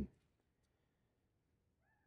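Near silence: faint room tone, with one faint, brief arching tone near the end.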